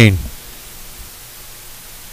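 A commentator's word cuts off, then a steady low hiss of the broadcast line or microphone with no other sound.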